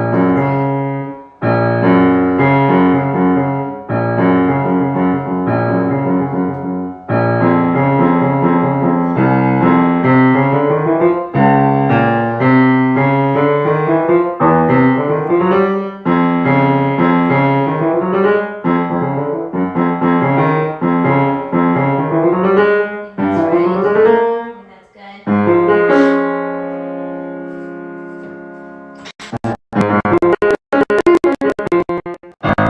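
Grand piano being played in practice: a run of repeated chords, then quick rising figures, ending on a chord that is held and left to ring and fade away.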